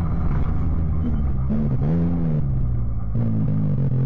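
UTV race car's engine heard from inside the cab, its pitch rising and falling with the throttle about two seconds in and again briefly near the end.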